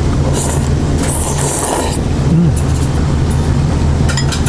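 Ramen noodles being slurped: two slurps in the first two seconds, the second longer, over a steady low hum.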